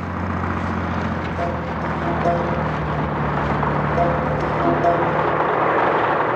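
Steady low engine drone with a rough, noisy background, as of machinery at a road-works site, with a few short, soft music notes coming and going over it.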